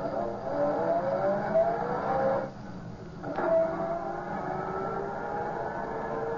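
Car engine accelerating away, its pitch climbing, then dropping back about two and a half seconds in and climbing again as it shifts up. It is a radio-drama sound effect in a vintage, band-limited recording.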